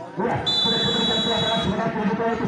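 Volleyball referee's whistle: one steady, high-pitched blast lasting a little over a second, starting about half a second in.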